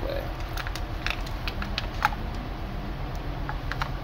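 Light clicks and taps of a plastic coil-on-plug ignition coil being handled and fitted against a Subaru engine part. Under them runs the steady low pulse of a running Subaru boxer engine at idle.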